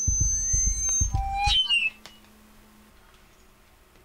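Handling noise on a clip-on lavalier microphone: for about two seconds, thumps and rubbing of fabric against the mic, with a few brief squeaky whistling tones. Then only a faint steady hiss.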